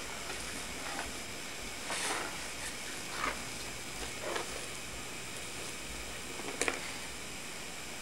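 Steady hiss of an old home-video tape, with a few faint short scuffs of a baby crawling on a tile floor and a sharp little click late on.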